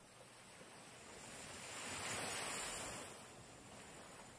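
Faint surf: a single small wave washing onto the shore, swelling to a peak about two seconds in and then fading away.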